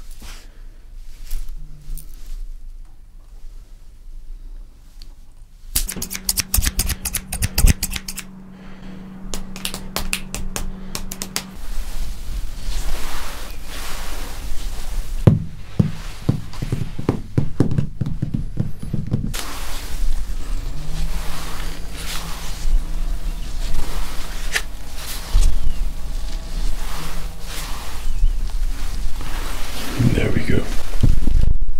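Close-up ASMR trigger sounds: quieter at first, then about six seconds in a fast run of sharp clicks and snips over a low steady hum, followed by a long stretch of mixed tapping and handling noises.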